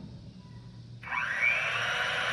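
Electric mixer-grinder motor switched on about a second in, spinning up quickly and then running steadily.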